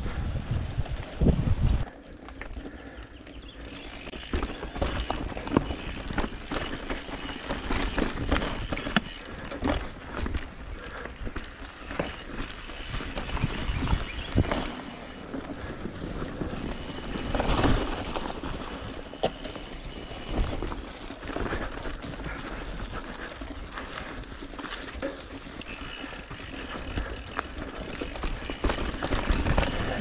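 Mountain bike ridden over a dry dirt and rocky trail: tyres crunching over dirt and stones and the bike rattling and knocking over bumps, with steady wind rumble on the microphone.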